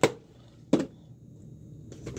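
Two short knocks about three-quarters of a second apart, as small plastic items are handled and set down on a worktable.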